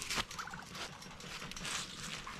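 Domestic tom turkeys calling, with short gobbling calls, among a few light scuffs and clicks.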